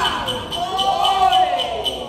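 A Hainanese opera performer's voice in drawn-out, sung declamation, its pitch gliding up and down, over a light, quick ticking of percussion about four beats a second.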